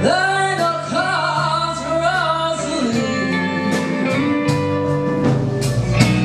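Live band music: a woman's lead vocal sliding between held notes, over guitar, bass and drums.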